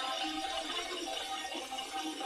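Faint steady hiss with faint snatches of tones: the episode's soundtrack leaking faintly from headphones into the microphone.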